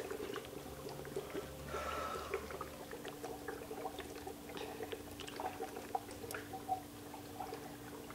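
Faint bubbling and crackling of dry ice in a cup of hot water, with scattered small ticks over a low steady hum.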